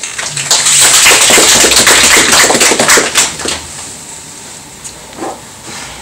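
Audience applauding a poetry reading: a burst of dense clapping, loud for about three seconds, then thinning out and fading.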